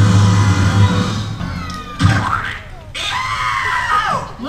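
Stunt-show soundtrack music and effects playing loudly over the show's loudspeakers, with a sudden hit about halfway through and a long, high, held cry in the last second or so.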